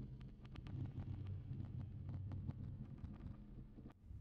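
Music tracks run through the Reflectosaurus modular delay plugin's granular 'I feel strange' preset: a low droning rumble scattered with irregular clicks. The sound drops out briefly near the end as the preset is switched.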